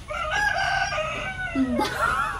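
A rooster crowing once: one long call of about a second and a half that starts high and drops slightly in pitch at the end.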